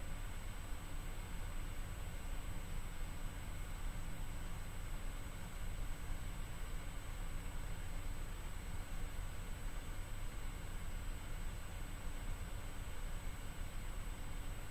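Steady room tone: an even hiss with a low hum and a faint, thin high-pitched whine, with no distinct events.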